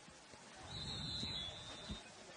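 Referee's whistle blown once, a single steady high note starting under a second in and held for over a second, blowing the play dead for a false start penalty. Faint crowd noise underneath.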